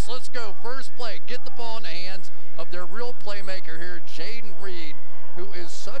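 A man's voice talking excitedly over the play, pitch rising and falling as he exclaims.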